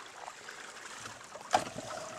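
Faint, steady trickle of creek water. About one and a half seconds in, a sharp knock, followed by a short steady tone.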